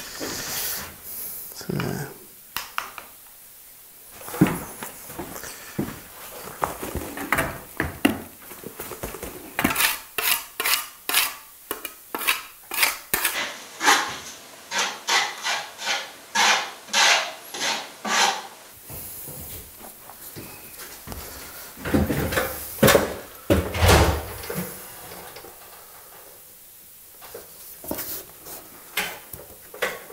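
A handsaw cutting a length of coving, with a run of rhythmic strokes about two a second through the middle, and scattered knocks from handling the tools and the coving around it.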